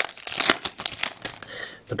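Foil wrapper of an Upper Deck hockey card pack crinkling in the hands as it is opened. It makes a quick run of sharp crackles that thin out towards the end.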